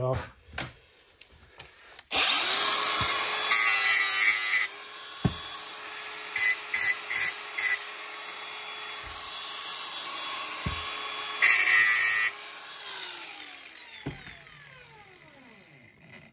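Cordless angle grinder spinning up about two seconds in and cutting into the casing of a boiler's copper heat exchanger in three grinding passes, the middle one a run of short touches, with a steady motor whine between them. It is switched off near the end and the whine falls away as the disc spins down.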